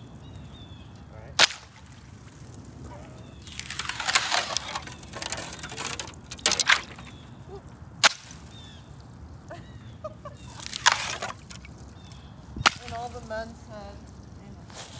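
About five sharp cracks a second or more apart, with crunching in between.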